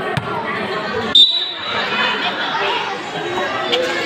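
A basketball bouncing on a concrete court, with a sharp knock about a second in, over the chatter of a crowd.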